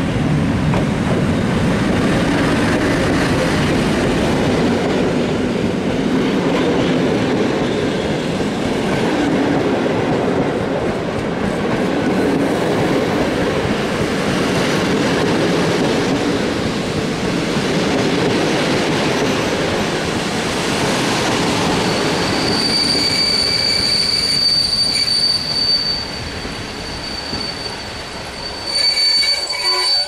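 EP07 electric locomotive and its passenger coaches rolling past on the station track with a steady rumble of wheels on rails. About 22 seconds in, a high, steady squeal sets in as the arriving train brakes, and the rumble fades towards the end.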